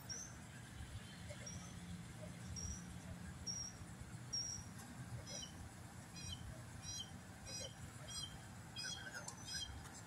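Faint bird chirping: short high calls about once a second, turning into quick two-note calls about halfway through, over a low steady outdoor rumble.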